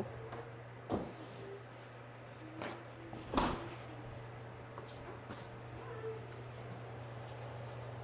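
Two light knocks of jars and kitchen things being handled at the counter, about a second in and again around the middle, with a few fainter ticks after them. A steady low appliance hum runs underneath.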